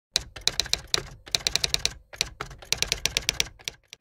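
Typing sound effect: rapid key clicks in several quick runs separated by short pauses, ending just before 4 seconds.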